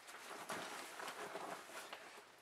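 Faint rustling of a nylon diaper bag being handled and packed, with a few soft knocks.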